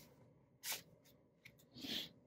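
Faint rustling of paper and plastic binder pages being handled, with two brief swishes, one under a second in and one near the end.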